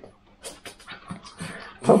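Two West Highland White Terriers stirring excitedly, with a quick irregular run of short soft sounds.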